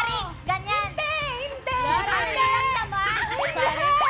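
Excited, high-pitched women's voices shouting and calling out over background music.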